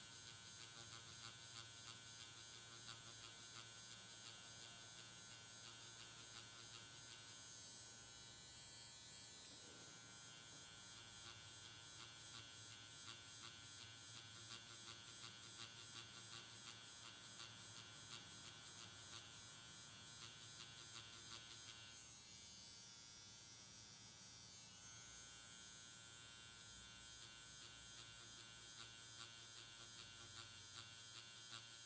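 Quantum One permanent makeup machine with a single-needle cartridge buzzing faintly and steadily as its needle shades pigment into latex practice skin.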